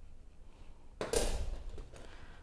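A metal spoon scooping chunky salsa into a glass canning jar. Quiet handling noise with one short, louder scrape about a second in.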